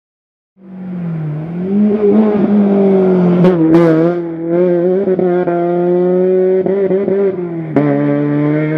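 BMW E30 rally car's engine running hard as it powers through a tarmac corner and pulls away, starting suddenly about half a second in; the pitch dips briefly and climbs back, then holds high and steady. Two sharp cracks come about halfway through, and another near the end.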